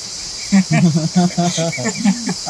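Steady high-pitched insect chorus from the surrounding forest, like crickets. From about half a second in, a man laughs in quick repeated bursts, louder than the insects.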